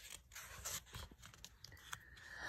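A page of a picture book being turned by hand: a faint rustle and a few soft scrapes of paper.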